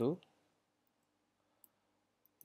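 A few faint computer keyboard keystrokes, isolated single clicks, after a brief spoken word.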